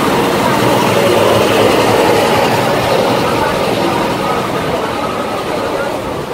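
A loud, steady mechanical rumble, like a large engine running, with faint voices beneath it. It swells a little in the middle and eases toward the end.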